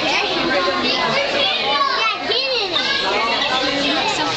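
Many children's voices talking and calling out at once, high-pitched and overlapping, with no single speaker standing out.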